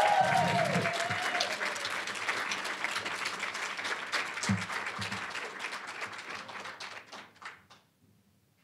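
Audience applauding after an award is announced, with a few voices whooping during the first second. The clapping thins out and dies away near the end.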